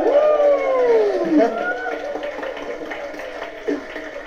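Several people's voices calling out in long, overlapping rising-and-falling exclamations for about the first second and a half, then quieter.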